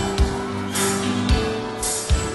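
Live rock band playing an instrumental vamp: a kick drum pulses under cymbal crashes that come about once a second, over sustained bass and chord tones.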